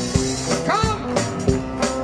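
Live band with piano, drum kit and electric guitar playing a song with a steady beat.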